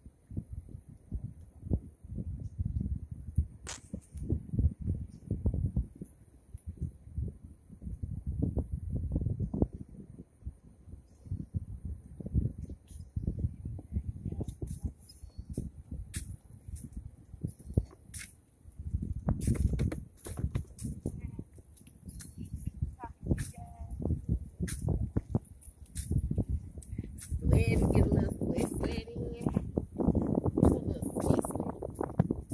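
Wind buffeting a handheld phone's microphone: an irregular low rumble that comes and goes in gusts.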